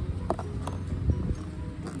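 A few light knocks and rustles of a plastic bag and plastic container being handled, over a steady low hum.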